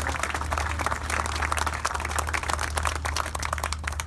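Crowd applauding, a dense patter of many hands clapping that keeps up steadily.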